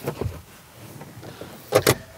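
A person climbing into the third-row seat of a Kia Sorento: clothing rustle and soft bumps against the seat and trim, then two sharp clunks in quick succession near the end.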